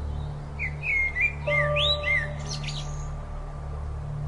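A songbird giving a quick run of chirps and whistled up-and-down sweeps for about two seconds, over a steady low music drone.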